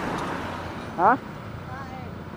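A car passing close by on the road: its tyre and engine noise, loudest at the start, fades away over the first second.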